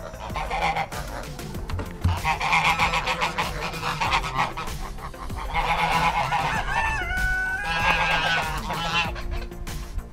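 Domestic geese honking in several loud bouts.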